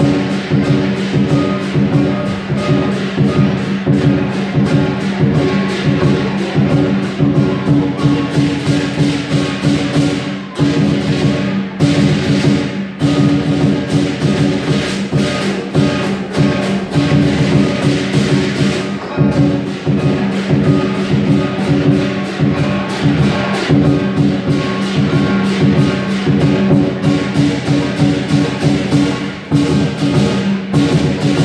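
Lion dance drum beaten in a fast, steady rhythm with clashing hand cymbals, over a sustained ringing tone; the beat pauses briefly twice near the middle.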